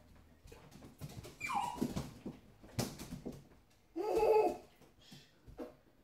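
Dog whining indoors: a high cry that falls in pitch about a second and a half in, and a louder, lower whine around four seconds, with a sharp click between them.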